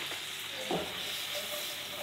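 Shrimp frying in olive oil in a pan, a steady sizzle, with a soft knock a little under a second in.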